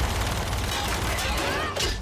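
Action-scene soundtrack from a TV episode playing: a dense, steady rush of noise, with a short whistling glide near the end.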